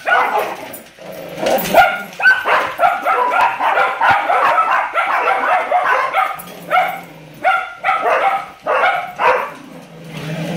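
Dog barking and yipping in a rapid string of high-pitched barks from about two seconds in, then single barks about half a second apart near the end.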